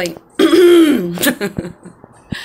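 A woman's short, loud, wordless vocal sound lasting under a second, its pitch rising and then falling, followed by a brief click.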